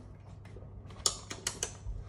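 A few sharp plastic clicks in quick succession, four in about half a second around the middle, as the cap is twisted back onto a supplement bottle.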